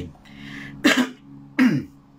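A man's voice making two short, sharp non-speech sounds about two-thirds of a second apart, each falling in pitch, after a soft breath.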